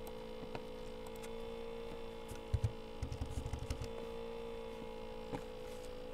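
Steady electrical hum on the recording, with a few faint clicks and a short run of low thuds around the middle.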